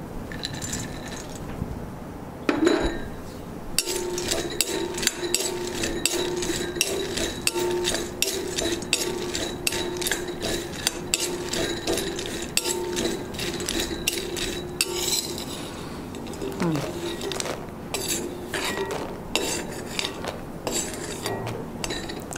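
A steel spoon scraping and clinking against a small kadai as ingredients are stirred. Rapid, uneven clicks set in about four seconds in and ease off near the end, over a steady low hum.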